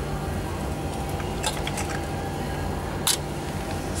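Steady low machinery hum with a faint thin whine above it. A few light clicks come about one and a half seconds in, and one sharper click near the end, from objects being handled.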